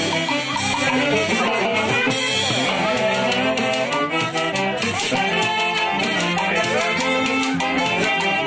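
Orquesta-style dance-band music with brass and percussion, playing a steady Latin dance beat without pause.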